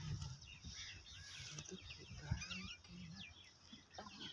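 Faint outdoor birdsong: many short chirps and whistles from several small birds, scattered throughout, over a faint low hum.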